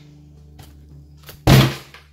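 Background guitar music, broken by one loud thump about one and a half seconds in: a cardboard booster box set down hard on a cloth playmat.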